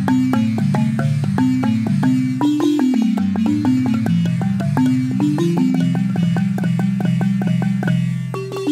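Gyil, a wooden xylophone with calabash gourd resonators, played with two mallets in a rapid, even run of strikes, low bass notes ringing beneath quicker repeated higher notes.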